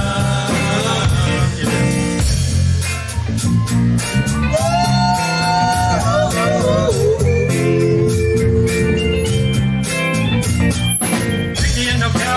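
Live rock band playing an instrumental break between sung lines: electric guitar plays long held notes that slide up, then glide down to a lower held note, over a steady bass and drum groove.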